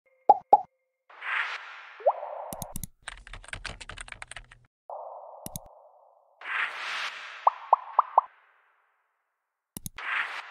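Interface sound effects for an animated web search: two quick pops, soft whooshes, a fast run of keyboard-typing clicks in the middle as a query is typed, a single click, then four short rising pops in quick succession and a last click near the end.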